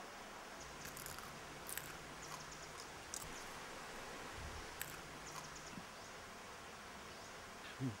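Faint outdoor ambience with a low insect buzz in two stretches and scattered short, sharp clicks, then a man coughs once near the end.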